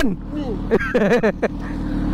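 Motorcycle engine idling steadily, a low even hum with fine regular pulsing, with short bits of talk over it near the middle.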